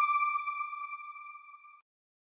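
A single bright, bell-like chime note from a news channel's outro jingle, ringing out and fading away, dying out shortly before the end.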